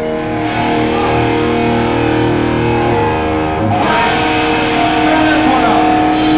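Electric guitar through an amplifier playing long, sustained, ringing chords, changing to a new chord about two thirds of the way through.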